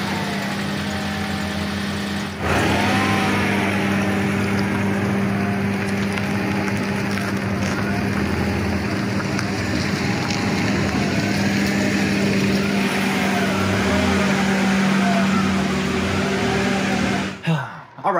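Honda Prelude's four-cylinder engine running steadily just after starting, then louder from a little over two seconds in as the car pulls away and drives off; the sound cuts off suddenly near the end.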